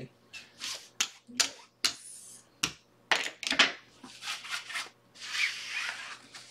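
Clay casino chips clicking and playing cards being handled on a felt blackjack table as a hand is cleared: a run of sharp separate clicks, then a longer sliding rustle of cards being scooped up about five seconds in.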